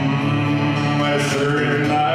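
A man humming a low held note into the microphone over acoustic guitar, humming to find the right pitch before singing.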